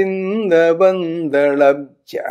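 A man singing a line of an amshagana-metre Yakshagana verse in slow, held notes that step up and down in pitch, with a brief break a little past halfway.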